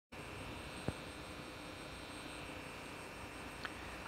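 Faint, steady room hum and hiss with a few thin steady tones, broken by a short faint click about a second in and a smaller one near the end.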